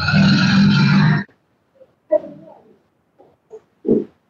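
Video-call audio glitch: a loud, harsh, distorted burst about a second long, then a few faint short noises and a click.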